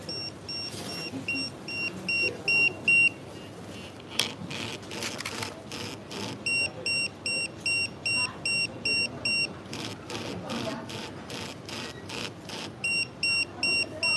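Restaurant guest pager beeping, signalling that the order is ready. It gives runs of short, high, evenly spaced beeps at about three a second, with bursts of buzzing rattle between the runs.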